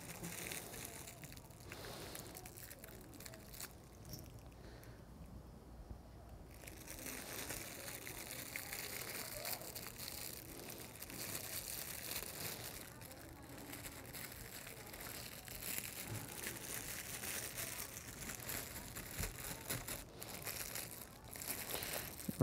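Faint crinkling of plastic wrapping being handled and peeled open by hand, the sealed packaging of prefilled communion cups, going on and off with a quieter stretch about four to seven seconds in.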